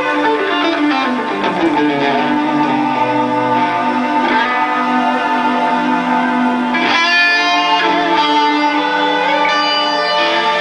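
Electric guitar playing a sustained, singing melody over a string orchestra. The guitar slides down in pitch over the first second or so, and a new phrase is struck about seven seconds in.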